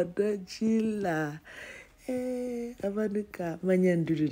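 A single voice singing, some notes held steady for about half a second.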